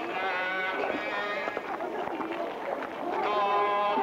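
People singing a hymn: long held notes with a slightly wavering pitch, thinning out in the middle and coming back strongly near the end.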